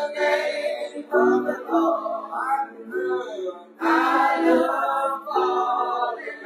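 Church choir singing its opening song, many voices together in long sung phrases with short breaks about a second in and just before four seconds.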